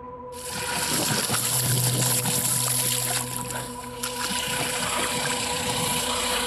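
Loud, steady rushing noise of wind and floodwater on a police body-worn camera microphone, starting a moment in. Under it runs a low, droning music bed of steady held tones.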